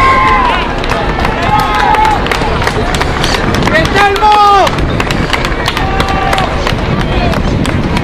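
Voices shouting calls across a rugby pitch during play, several drawn-out shouts with the loudest about four seconds in, over steady outdoor noise.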